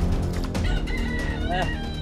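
A rooster crowing once, a single long call of about a second and a half starting a little under a second in, over soft background music.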